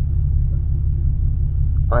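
Steady low rumble of a car driving, its engine and road noise heard from inside the cabin.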